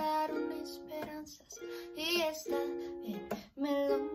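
Ukulele with a capo strummed in chords, a steady rhythmic strumming pattern.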